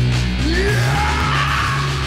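Live doom-metal band playing loud sustained low chords, with a squealing high tone that bends upward about half a second in and then slowly slides down.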